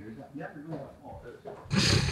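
Men talking quietly, then a loud burst of laughter near the end.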